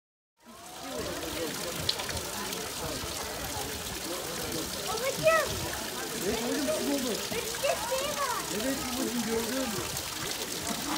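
Water rushing and trickling beside a canal narrowboat, with people's voices chattering over it. The sound cuts in about half a second in.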